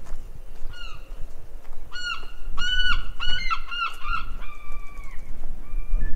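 A bird calling: a run of short, high, clear calls starting about a second in, coming fast and close together in the middle, then one longer drawn-out call.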